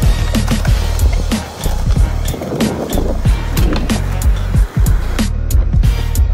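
Skateboard rolling on smooth concrete, with the sharp clack of the board popping and landing, under music with a heavy bass beat.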